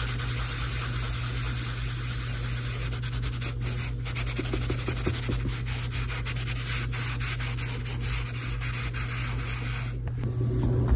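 Tissue rubbed back and forth over a graphite pencil drawing on paper to blend the shading: a steady, dry rubbing made of many quick, closely spaced strokes.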